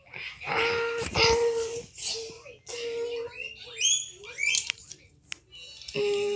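A person's voice making wordless sounds: short held tones broken up by noisy bursts, the loudest about a second in.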